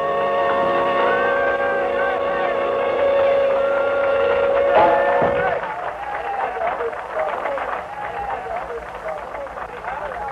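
A small swing jazz band with clarinet holds a final chord for about five seconds, and a drum stroke cuts it off. Then people talk over one another in the room.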